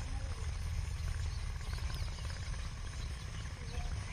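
Quiet outdoor background: a steady low rumble of wind on the microphone, with a couple of faint, brief voices.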